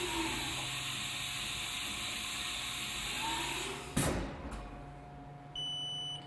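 Haas TM-1p mill's automatic tool changer swapping tools in the spindle: a steady rushing hiss with a faint rising and falling whine for about four seconds, then a sharp clunk as the new tool is seated. A short high beep sounds near the end.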